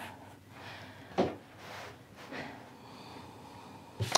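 Quiet handling of cotton fabric on a cutting mat: soft rustles and slides of cloth being pulled and smoothed, with one brief, louder sudden sound about a second in.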